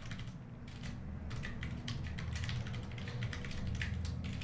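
Typing on a computer keyboard: an irregular run of key clicks.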